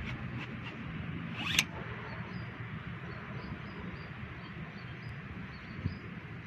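Outdoor ambience at a pond: a steady hiss with faint, evenly repeated high chirps. A short swish rises sharply in pitch about one and a half seconds in and cuts off suddenly, and a brief low thump comes near the end.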